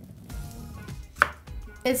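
A kitchen knife slicing cherry tomatoes strikes a wooden cutting board once, a sharp knock about a second in.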